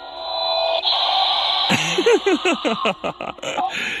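Battery-operated "Tea Time Terror" animated Halloween doll playing its sound effects through a small built-in speaker: a hissing screech for the first second and a half, then a low, distorted voice with a rapid, laugh-like rhythm.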